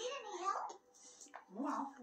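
A dog's whiny play growling during a tug-of-war over a rubber ring toy, heard twice with a short pause between.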